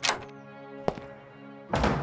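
A door opening and shutting over soft, sustained music: a sharp thunk at the start, a light click about a second in, and a heavier, longer thud near the end.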